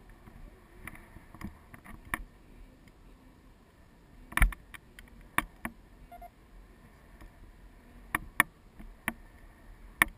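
Scattered sharp clicks and knocks from a handheld action camera rig, its housing and mount knocking as it is held, over a quiet background. The loudest knock comes about four and a half seconds in, with a few more near the end.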